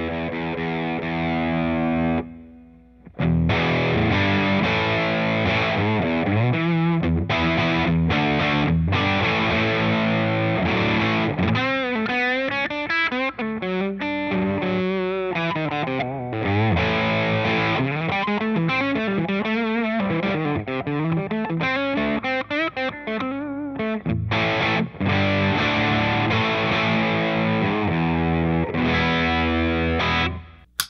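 Electric guitar played through a breadboarded overdrive circuit with no clipping diodes, so the op-amp clips by itself against its supply rails, giving a distorted tone. A chord rings for about two seconds, then after a short break comes continuous playing of chords and lead lines with bent, wavering notes in the middle.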